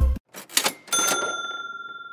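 A short swish, then a single bright bell ding about a second in that rings on and slowly fades. Music cuts off right at the start.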